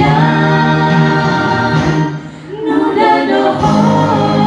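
A woman singing a Dusun-language song into a microphone over a karaoke backing track, amplified through a PA, holding long notes with a short dip in the sound a little past halfway.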